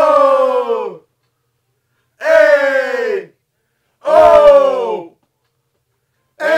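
Men's voices singing together: three held notes of about a second each, each sliding down in pitch at the end, with silence between them.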